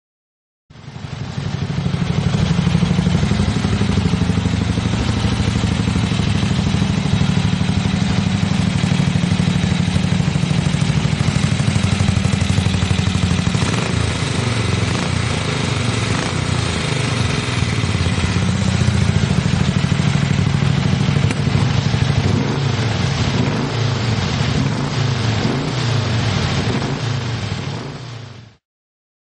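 Triumph 750 parallel-twin motorcycle engine running steadily. Over the last several seconds the throttle is blipped, so the revs rise and fall.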